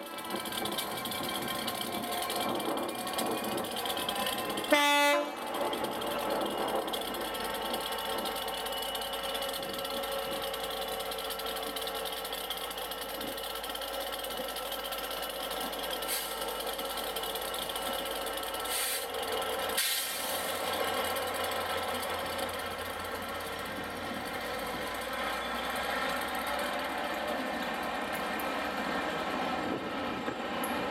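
Class 67 diesel locomotive (two-stroke V12) giving one short horn blast about five seconds in, then its engine and the train of coaches running steadily past, with a few sharp clicks from the wheels.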